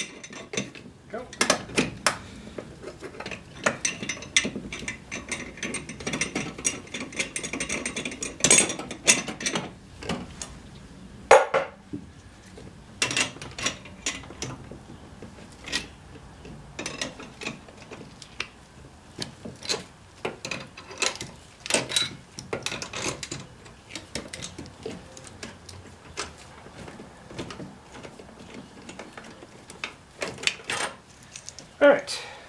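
Hand tools clicking and knocking on metal brake line fittings at a brake master cylinder, with a run of rapid clicking from about four to ten seconds in.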